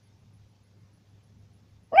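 Near silence with only a faint low hum, then a loud vocal exclamation of "ah" bursts in right at the end.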